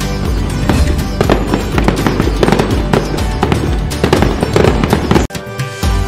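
Firecrackers crackling and popping in quick, dense strings over background music. The crackle cuts off suddenly about five seconds in, leaving a brief dip before the music comes back.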